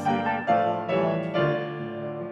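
Piano playing a hymn tune, with chords struck about half a second apart, each ringing and fading.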